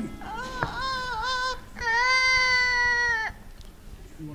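Amazon parrot singing: a short wavering phrase, then one long held note of about a second and a half.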